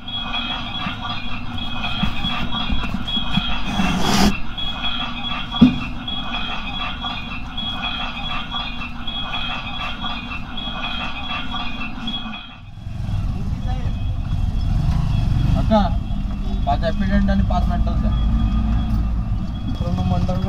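Street noise at a bus depot and market: a vehicle engine running with voices in the background. A sharp knock comes about six seconds in. After about twelve seconds the sound changes suddenly to a lower rumble with faint voices.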